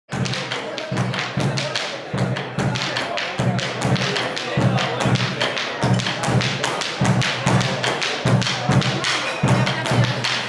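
A bombo legüero drum beats a steady rhythm of low thumps, about two a second, under the sharp taps and stamps of a malambo dancer's zapateo footwork on a wooden floor.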